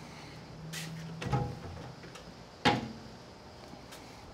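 Steel cook-chamber lid of a Mill Scale 94-gallon offset smoker being handled: a low tone and a knock about a second in, then one sharp metal clang with a short ring about two-thirds of the way through, the loudest sound, as the lid shuts.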